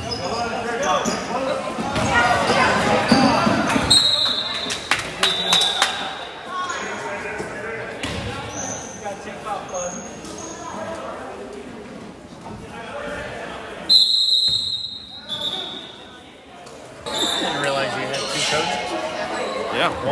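A basketball bouncing on a hardwood gym floor, with voices and short high squeaks echoing in a large gymnasium.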